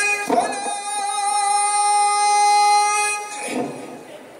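A single voice holding one long, high chanted note of religious praise singing, steady in pitch, with a brief break just after the start, fading out about three and a half seconds in.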